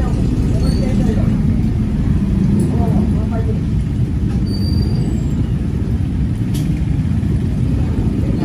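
Steady low rumbling background noise with faint voices talking in the background.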